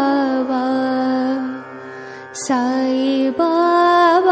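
Devotional Sai Baba mantra sung as a long, slow melodic chant over a steady drone, with a brief dip and a fresh phrase starting about halfway through.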